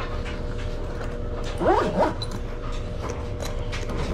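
A dog whining: two short high, sliding whimpers about halfway through, over a steady low hum.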